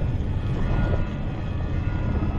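Deep, steady rumble from a film soundtrack's sound design, with a faint thin tone held above it.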